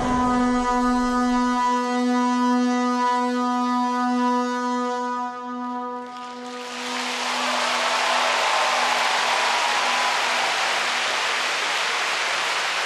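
The programme music ends on one long held low note that fades out about six seconds in. The arena crowd then applauds steadily.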